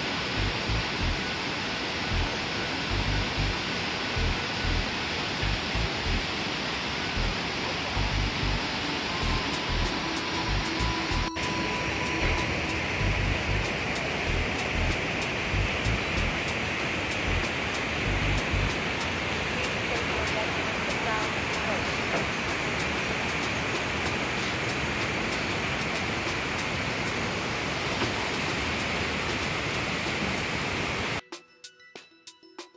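Steady rushing noise of Kegon Falls, a tall plunge waterfall, with irregular low gusts of wind buffeting the phone's microphone.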